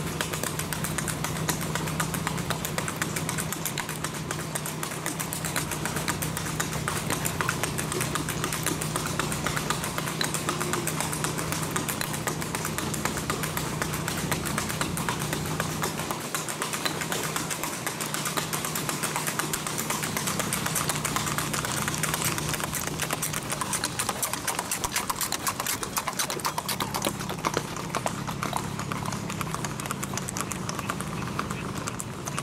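Shod hooves of a singlefooting gaited horse, a Tennessee Walker, on asphalt: a fast, even clip-clop that keeps up throughout. A steady low engine hum runs underneath.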